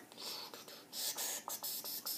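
Hands rubbing and turning a small rubber ball close to the microphone, a run of short scratchy, hissing rubs with a few light clicks.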